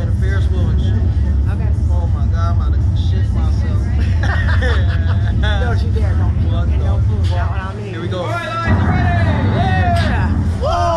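Two riders laughing and exclaiming over a steady low rumble. The rumble dips for about a second near the end, then their voices rise into shrieks as the slingshot capsule launches.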